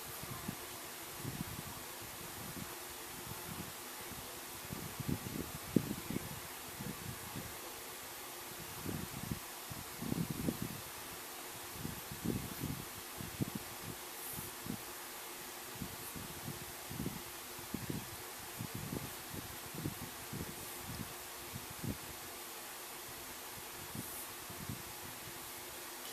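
Soft, irregular rustling and light bumps of hands and yarn handled close to the microphone as a strand of black yarn is wrapped tightly around a braided yarn tie, over a steady faint hiss.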